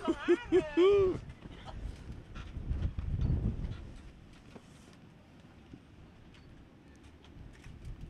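Strong wind buffeting the microphone, with a loud low rumbling gust about three seconds in and fainter rumble after it. It follows four short pitched vocal hoots in the first second.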